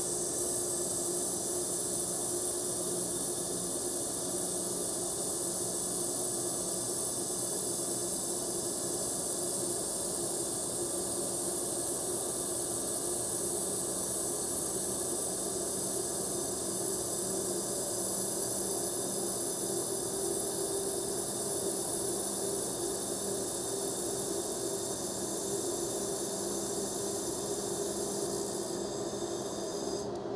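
Steady hiss of an IPG LightWELD handheld laser welder running a fusion weld on aluminium, with no filler wire, over a low steady machine hum. The hiss drops away shortly before the end as the weld stops.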